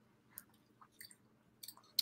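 A few faint ticks and rustles as a fur collar is handled and settled around the neck, otherwise quiet room tone.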